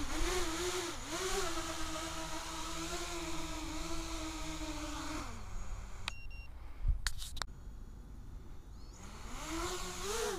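Small quadcopter's electric motors whining, the pitch wavering up and down, then falling and cutting out about five seconds in. A few sharp clicks follow in the quieter stretch, and the motors start whining again, rising in pitch, near the end.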